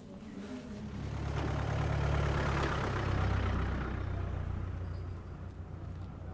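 A motor vehicle driving past: its engine hum swells over the first couple of seconds, is loudest about halfway through, then fades away.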